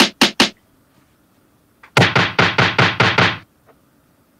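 A snare drum sample triggered repeatedly in the Koala sampler app, about five hits a second: three hits at the start, a gap of over a second, then a run of about eight more. The snare is sounding pitched down, a fault later traced to a pitch setting in the app.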